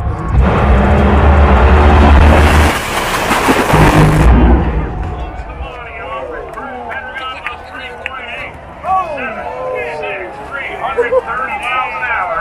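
Two nitromethane Funny Car dragsters launching and running at full throttle, very loud for about four seconds, then cutting off abruptly near the finish, where one car's engine exploded. The crowd shouts and cheers afterwards.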